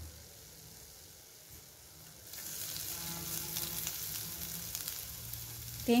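Whole spices and dried red chillies frying in a little oil in a non-stick pan: a fine crackling sizzle that sets in about two seconds in and keeps going.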